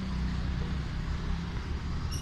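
Steady low drone of an engine running in the background.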